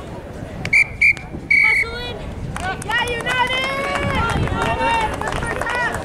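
Referee's whistle blown three times about a second in, two short blasts then a longer one, followed by several voices shouting and calling across the field.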